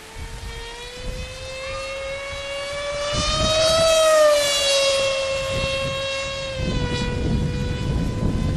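The electric motor and pusher propeller of a Multiplex FunJet RC jet whine as it flies past. The pitch rises a little to its loudest about four seconds in, then drops as it moves away. A low, gusty rumble runs underneath and grows stronger near the end.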